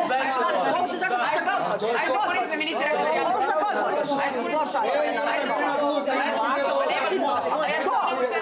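Several people talking loudly over one another at once, a jumble of overlapping voices in a room.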